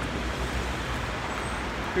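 Road traffic noise: a steady low rumble from cars on the street, with no single vehicle standing out.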